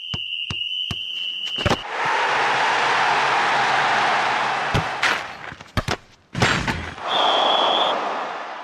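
Sound effects of a TV sports show's closing graphics: sharp hits and clicks, two long rushing swells of noise, and a short high steady tone at the start and again near the end.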